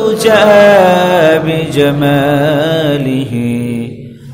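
A man chanting a devotional line in long, drawn-out held notes with a wavering melody that steps down in pitch across the phrase, breaking off at the very end.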